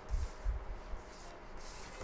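Soft rubbing and rustling handling noise, with two dull low bumps in the first half second.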